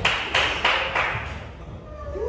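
Four sharp hand claps, about a third of a second apart, getting fainter.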